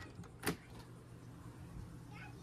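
Travel trailer entry door latch clicking once as the door is pulled open, over a low steady hum.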